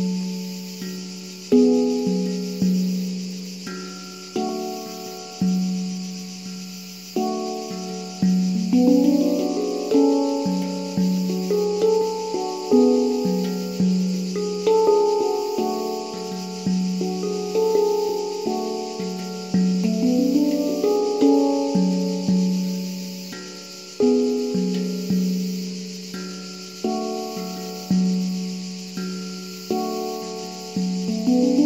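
Satya Sound Sculptures pantam (steel handpan) played by hand: a melody of ringing, slowly decaying notes over a low central note struck every second or two. A steady high insect drone runs underneath.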